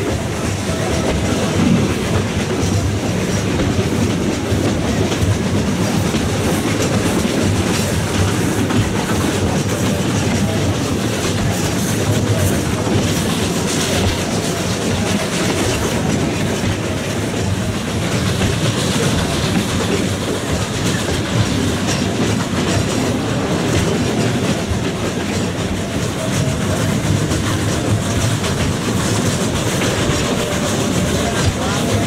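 Narrow-gauge carriages of the Furka Cog Steam Railway rolling and rattling steadily behind a steam locomotive as the train climbs the mountain. The running noise is loud and even throughout.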